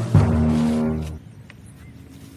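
A loud, deep, sustained horn-like chord with many overtones, fading out a little over a second in.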